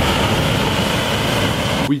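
Oversized butane lighter with its fuel restrictor removed, burning a huge flame: a loud, steady rush of escaping gas and fire that cuts off suddenly just before the end.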